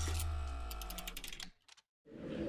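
Television transition sound effect for an animated logo: a low boom with a held ringing tone, then a quick run of sharp clicks, fading and cutting off to silence about a second and a half in.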